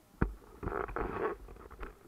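Handling noise from a camera being turned around by hand: a sharp knock about a quarter second in, then muffled rubbing and rustling for about a second.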